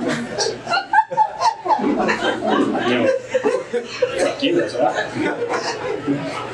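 Audience laughing and chuckling, many voices overlapping, after a joke.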